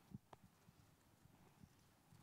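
Near silence: room tone with a few faint, soft knocks.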